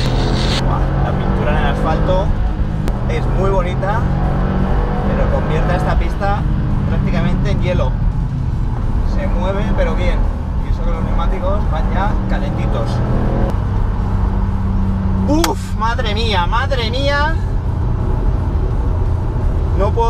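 Subaru WRX STI's turbocharged boxer four-cylinder engine heard from inside the cabin while driven hard on a race track, its note stepping down in pitch about two-thirds of the way through. A voice runs over it.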